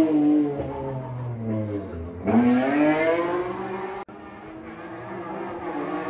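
Rally car engine slowing with its pitch falling, then revving hard with a sharp rise in pitch about two seconds in as it accelerates. The sound cuts off abruptly about four seconds in, and a fainter, steadier engine note follows.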